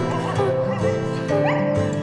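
Soundtrack music of an animated short, with held notes, and a dog's short rising whimper about one and a half seconds in.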